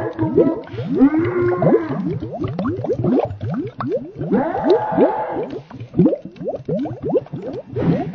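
Digitally warped, slowed cartoon voice audio, smeared past recognition into a dense run of quick rising pitch sweeps, several a second. Two longer wavering, drawn-out tones sound about a second in and again near the middle.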